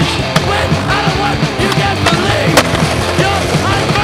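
Skateboard on concrete: wheels rolling and two sharp board clacks about two seconds apart, with rock music playing over them.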